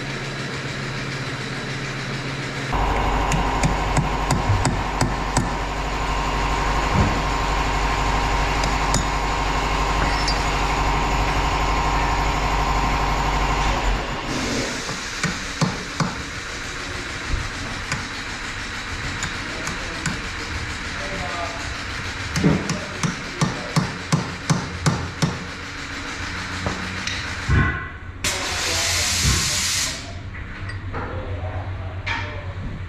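Arc welder buzzing and crackling for about ten seconds while a bead is laid around a worn steer-axle bearing race, so that the race shrinks as it cools and comes free. Then metal hammer blows, including a fast run of about four a second, and a short hiss near the end.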